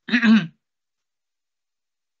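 A man briefly clears his throat, a short two-part voiced sound lasting about half a second, after which the sound cuts off to silence.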